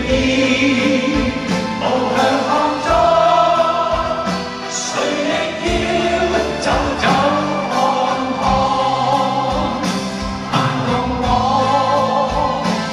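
A live Cantopop song: a male singer sings into a microphone over band accompaniment with a steady beat.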